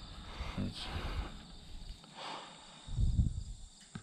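A handful of dry hay rustling as it is handled and sniffed close up, with a couple of breathy puffs, over a steady high chirring of crickets.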